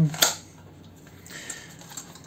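A sharp plastic click about a quarter second in as the drone's battery pack snaps into its bay, followed by faint handling rustle with a small tick or two.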